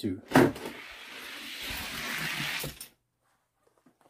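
Two die-cast toy cars racing down a gravity drag track: a sharp clack as they are released, then the rattling rumble of their wheels on the track, growing louder as they near the bottom and cutting off suddenly just under three seconds in as they finish.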